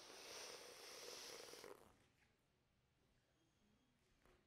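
A person blowing hard by mouth into a long twisting balloon: one faint, breathy rush of air lasting a little under two seconds, then fading out.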